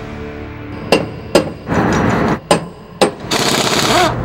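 Collision-shop work sounds over a faint music bed: four sharp bangs spaced half a second to a second apart, with bursts of hiss between them and near the end.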